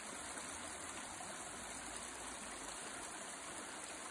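Water of a small stream rushing steadily over stones: a faint, even wash of sound.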